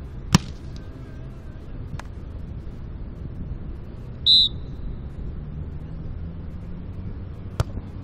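Sharp slaps of hands striking a beach volleyball: a loud one about a third of a second in, a lighter one at about two seconds and another near the end, over steady low background noise. A short, high-pitched beep cuts in a little after the middle.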